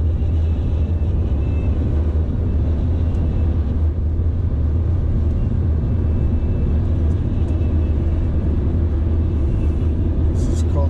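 Steady in-cabin rumble of a car being driven along the highway: low engine and tyre-on-road noise.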